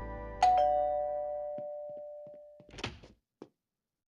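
Two-note ding-dong doorbell chime, a higher note then a lower one, ringing on for about two seconds before a thump and a faint click. The tail of a music cue fades out at the start.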